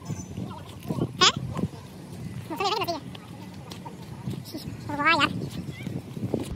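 Livestock bleating: two quavering bleats about two and a half seconds apart, the second the louder, with a shorter rising cry about a second in.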